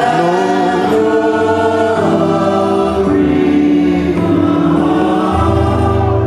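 A congregation singing a slow hymn in long, held chords that change about once a second.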